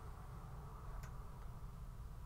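Quiet room tone with a steady low hum and one faint click about a second in.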